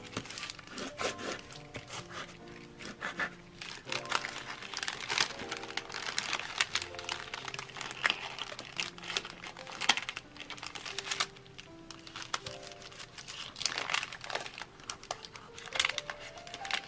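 Kraft-paper gusset bag and clear OHP film crinkling as they are handled and pressed flat, in many sharp crackles, over background music with held notes.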